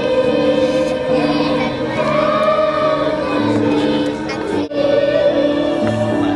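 Elementary school children's choir singing a song over instrumental accompaniment, with one momentary drop-out about three-quarters of the way through.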